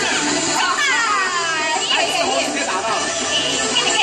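Several lively voices calling out with falling cries, overlapping one another, over music.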